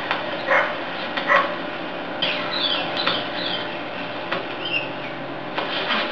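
A dog barking a few short times over a steady background hiss, with high chirping calls between about two and three and a half seconds in.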